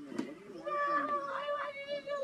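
A woman wailing in long, high-pitched cries, with a brief click just after the start.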